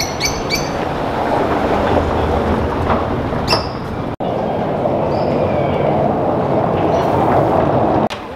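Car tyres rumbling over a cobblestone street as a car drives past, with a few short high squeaks. The sound cuts out for an instant about halfway, then the rumble swells again toward the end.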